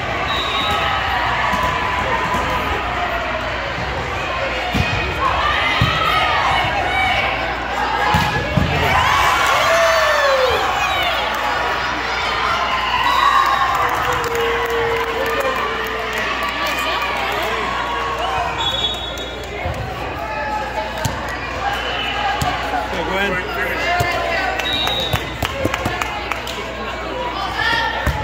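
Volleyball being hit and bouncing on a gym floor, several sharp hits through a rally, under continual shouting and cheering from players and spectators.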